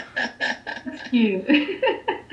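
A man chuckling: a quick run of short laugh pulses that trail off into a few sliding voiced sounds.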